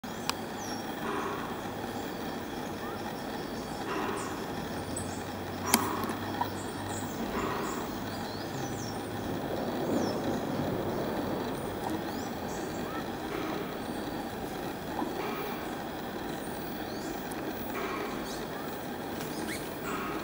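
Outdoor background: a steady low hum and rumble, with faint, short, high bird chirps scattered through and a few sharp clicks, one near the start and two around six seconds in.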